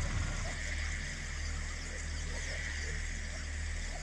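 Quiet breakdown in a grime instrumental: a steady low sub-bass drone with a faint hiss above it, without drums.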